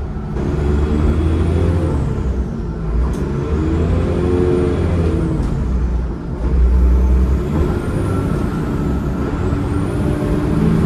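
Transbus Trident's Cummins ISCe 8.3-litre diesel and ZF Ecomat five-speed automatic gearbox heard from inside the bus, driving under power, with a high gearbox whine that rises and falls several times. The engine note briefly drops about six seconds in, then comes back louder.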